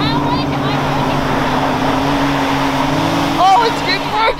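Can-Am side-by-side UTV engines running hard and steady while spinning their tyres in snow, two machines tethered by a tow strap doing a burnout donut. The engine note rises a little near the end, and excited shouts come in over it.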